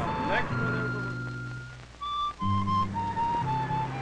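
Soundtrack music: a long held high note over low sustained bass notes, then a short melody of about four notes stepping downward.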